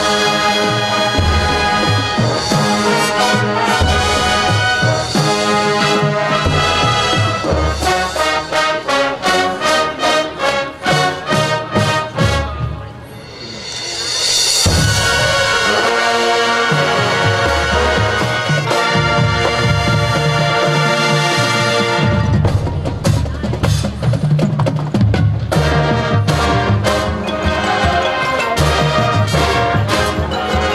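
Live high school marching band playing loud brass and percussion: trumpets and trombones over drumline strokes. Drum hits come thick and fast before the middle, the band drops off briefly, then a cymbal swell brings the full brass back.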